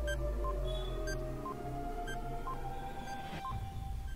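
Countdown timer sound effect over a sustained music bed with a low rumble. Short electronic blips alternate between a higher and a lower pitch, about two a second, ticking off the seconds.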